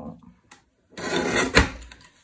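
Sliding-blade paper trimmer cutting through cardstock. The blade carriage is drawn along its rail for most of a second, starting about a second in, with a sharp click near the end of the stroke as the excess strip is trimmed off.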